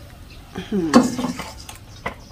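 Wok spatula scraping and clinking against a ceramic bowl as a stir-fry is served, with a short voice-like sound about halfway through that is the loudest part.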